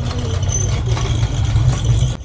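Low, fluctuating rumble of wind buffeting the microphone of a camera riding along on a moving bicycle.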